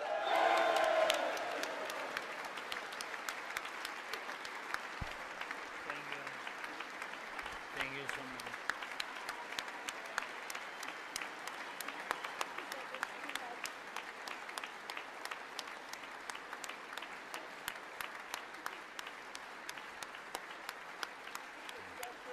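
Sustained applause from a large audience. It is loudest in the first couple of seconds, with a few voices mixed in, then settles into steady clapping.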